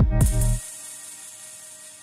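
Electronic dance track with a heavy bass line playing through a Pioneer DJ mixer, cut off about half a second in. A faint fading reverb tail with a high hiss carries on after the cut.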